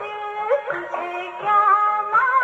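Hindi film song played from a 78 rpm record on an acoustic horn gramophone: a woman's voice singing held notes that slide between pitches, with instrumental accompaniment.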